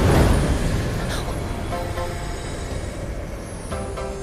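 A low rumbling whoosh of a magic sound effect, loudest at the start and slowly fading away.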